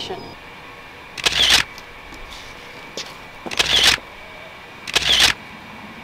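A camera shutter firing three times, a couple of seconds apart, as full-length photos are taken.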